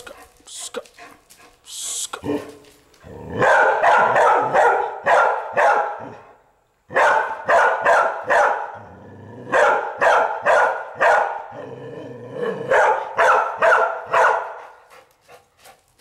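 Young red-nose pit bull barking at an iguana in four quick runs of several barks each, with short pauses between the runs.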